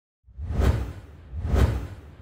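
Two whoosh sound effects about a second apart, each swelling and falling away with a deep low rumble underneath, then a fading tail.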